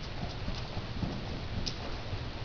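Morgan horse at a fast trot on soft arena footing: dull, irregular hoofbeats over a steady hiss, with one brief sharp click near the end.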